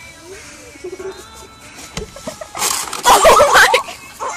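A single sharp knock about halfway through, then loud yelling voices near the end.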